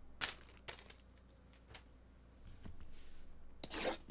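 A few light clicks of handling on a tabletop, then near the end a rubbing, scraping noise as a cardboard trading-card box is taken hold of and slid across the table mat.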